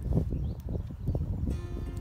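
Background music, with a cow munching sliced carrots close by: irregular short crunches under the music.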